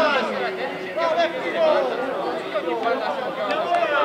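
Several raised voices of football players shouting and calling out over one another, with no clear words.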